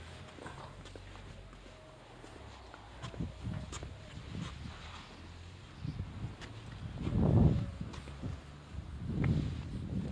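Slow, irregular footsteps on a concrete yard, with a louder low thump about seven seconds in and another near nine seconds.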